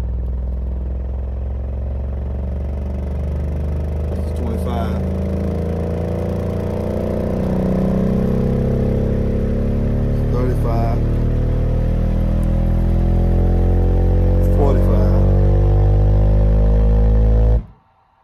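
Earthquake Sound Tremor X124 12-inch subwoofer playing a test-tone sweep in free air. A deep bass tone climbs slowly from about 20 Hz toward 40 Hz, with a buzzy layer of overtones rising along with it. It grows louder, then cuts off suddenly near the end.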